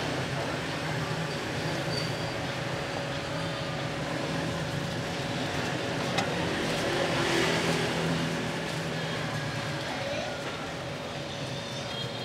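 Steady background street traffic with a low hum and a murmur of voices. There is one short knock about six seconds in.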